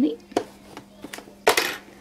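Small scissors trimming threads on quilted fabric: a few light clicks, then a louder short clatter about one and a half seconds in. A faint steady hum runs underneath.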